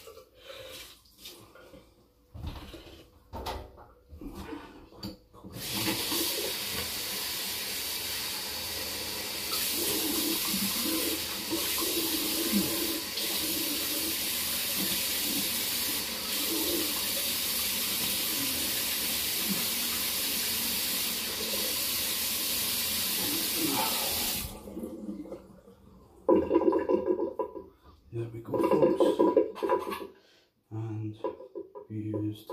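Water splashing in a bathroom sink, then a tap running steadily for about twenty seconds and cutting off, followed by a few loud bursts of splashing near the end, as a face is rinsed after a wet shave.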